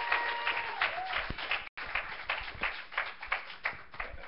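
Congregation applauding, many hands clapping unevenly, with a brief dropout in the sound partway through.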